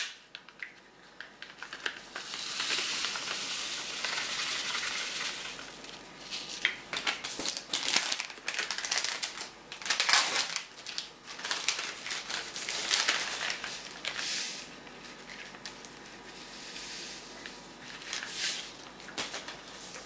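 Irregular spells of crinkling and crackling as dry citric acid is measured out into a small cup.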